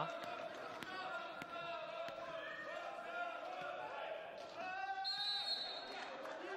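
Voices in a gymnasium calling and cheering over a service ace, with a few sharp thuds of a volleyball bouncing on the court floor.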